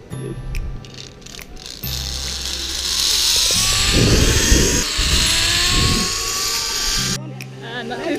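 Zip-line trolley pulleys running along a steel cable: a hiss with a slow rising whine from about two seconds in, cutting off suddenly near the end. Background music plays under it.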